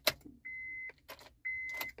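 Dashboard warning chime of a 2005 Honda Accord beeping twice, steady high tones about a second apart, with clicks of the ignition key being turned. The engine does not crank, a no-start that the mechanic suspects is a failed ignition switch.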